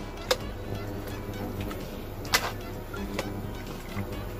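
Background music, with two sharp clinks of a metal ladle against a non-stick wok as radish pieces are stirred into simmering soup, the second louder than the first.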